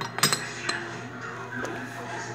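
Ceramic lid clinking against a small glazed ceramic pot: a quick cluster of clinks just after the start, a single clink about half a second later and a fainter one near the end.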